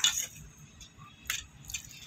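Steel spoon clinking against a stainless-steel plate while spreading cooked masala: a sharp clink at the start, another a little past a second in, then a few light taps.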